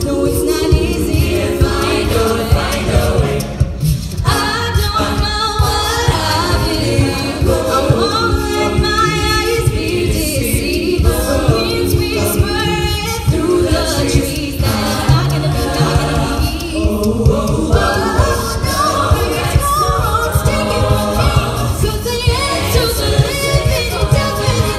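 Mixed men's and women's a cappella group singing live through microphones and a PA, lead and backing voices in harmony over vocal percussion that keeps a steady beat.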